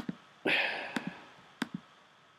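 A few sharp computer mouse clicks, about four in two seconds, as a text box is selected. A short breathy hiss starts about half a second in and fades out within a second.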